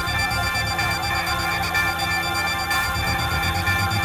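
Immersive electronic soundscape built from processed field recordings of birds and insects: many layered, steady high tones over a fast, evenly pulsing low throb.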